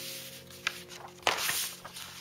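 Paper pages of a model-kit instruction booklet rustling as they are handled and turned, with the loudest rustle about a second and a quarter in.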